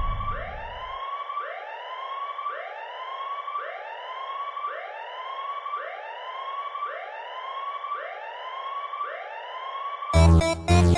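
A siren sound effect in a DJ mix: a rising whoop, repeated evenly about once a second, with no beat under it.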